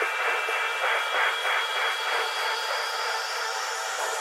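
Techno track in a breakdown with the kick drum and bass taken out: a noisy, hissing texture with a faint repeating pulse in the upper register.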